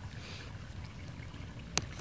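Faint scraping of a utility knife blade cutting through foam-backed headliner fabric. There is a single sharp click near the end.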